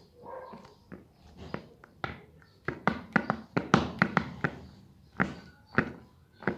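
Adidas Gamemode turf football shoes, their rubber-studded soles stepping and tapping on a tile floor: a few soft knocks at first, then a quick run of about ten sharp knocks in the middle and two more near the end.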